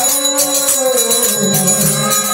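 Devotional kirtan music: a harmonium holding steady notes over continuous jingling hand percussion.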